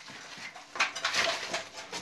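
Light, scattered knocks and clinks over a faint background, with a few sharper taps just under a second in.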